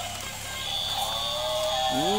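Electronic music from battery-operated sound toys, a steady held tune with a thin high tone above it.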